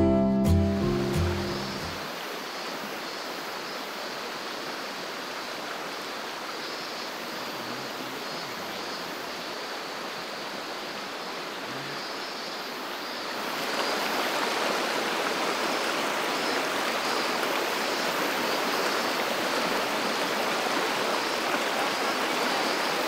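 Mountain stream rushing over rocks: a steady hiss of flowing water, which grows louder about two-thirds of the way through. Acoustic guitar music fades out over the first two seconds.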